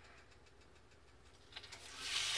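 Near silence: room tone with a faint low steady hum, and a brief soft noise near the end.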